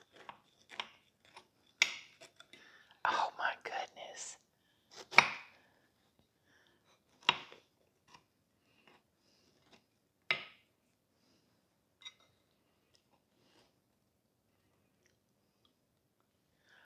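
A knife cutting a slice from a frosted layer cake: short scrapes and taps of the blade through the cake, spaced a second or two apart. There is a denser run of them a few seconds in, the loudest about five seconds in, and they thin out over the second half.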